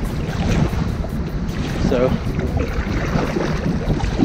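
Wind buffeting the microphone, a steady low rumble that runs under the short pause in speech.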